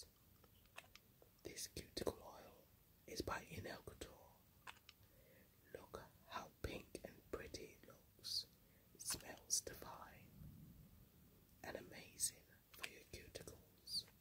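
A woman whispering softly close to the microphone in short breathy phrases, with a few small clicks and taps between them.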